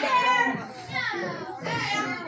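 Spectators' voices, children's among them, calling out and talking over one another in a hall, with no clear words.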